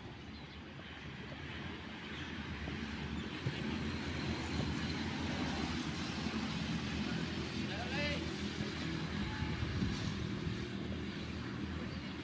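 A steady low rumble that swells over the first few seconds and then holds, with faint distant voices calling across the pitch.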